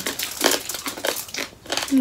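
Crispy lechon belly skin crunching as it is chewed close to the microphone: a run of irregular crisp crunches.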